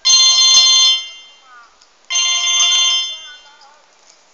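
Mobile phone ringtone: two loud rings of about a second each, about two seconds apart, each a chord of steady electronic tones. It is an incoming call that goes unanswered.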